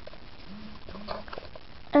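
Handling noise from a camera being repositioned over a drawing: a few faint knocks and rustles, with two brief low hums about half a second and a second in.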